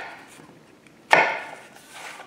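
Kitchen knife cutting through zucchini and striking a bamboo cutting board, one sharp chop about a second in.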